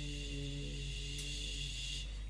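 A person's voice holding a low, steady hummed tone that is chant-like and shifts slightly in pitch a couple of times.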